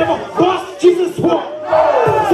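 Loud shouted vocals over a live hip-hop beat, with the beat's low hits coming about twice a second.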